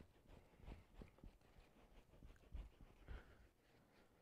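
Near silence, with a few faint soft taps and rustles from a paintbrush working black acrylic paint onto a canvas.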